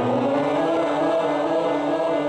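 Voices singing a vocal warm-up exercise, holding steady sustained notes.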